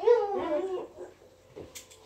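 A dog whining: one drawn-out whine that rises and falls in pitch over the first second, followed by a faint click near the end.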